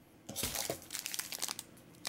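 Plastic packaging crinkling as hands handle a shrink-wrapped pack of Pokémon card sleeves: a run of quick, light crackles that dies down near the end.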